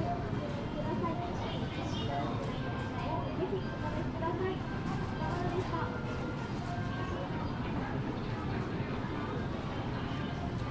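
Busy shop ambience: indistinct voices of people talking in the background over a steady low hum.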